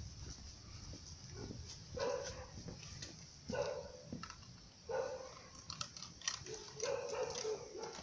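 A dog barking faintly, four calls spaced a second or so apart, over a steady low rumble.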